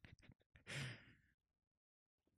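Near silence, broken by one soft sigh from a man close to the microphone a little under a second in.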